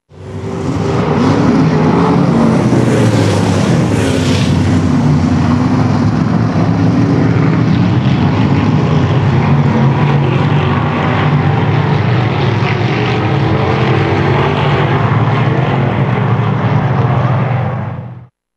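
Several stock car engines running at racing speed, loud and continuous, their pitches rising and falling as the cars go by.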